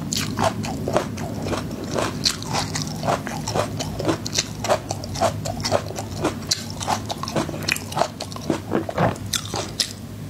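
Close-miked mouth sounds of someone chewing peeled garlic cloves: many quick, crisp crunches in an irregular run, several a second, with a fresh bite near the end.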